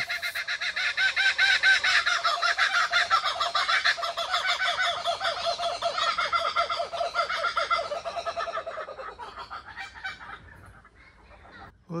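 Birds calling in a loud chorus of fast repeated notes, which gradually fade and die away about ten seconds in.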